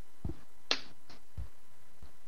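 Steady faint line hiss in a pause on a call-in line, broken by a few soft low thumps and a short sharp click about three quarters of a second in.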